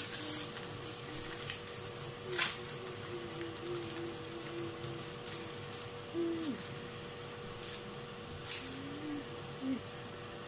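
A person humming softly, a wavering low tune that breaks off and resumes, with a few sharp clicks of kitchen handling, the loudest about two and a half seconds in. A faint steady electrical hum sits underneath.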